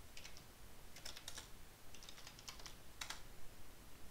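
Typing on a computer keyboard: four short bursts of quick key clicks, the last a single keystroke about three seconds in, as terminal commands are entered.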